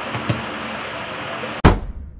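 Steady electric-fan hum in a small room with a soft knock shortly after the start; near the end a loud, sudden intro sound-effect hit with a short ring-out cuts in, followed by silence.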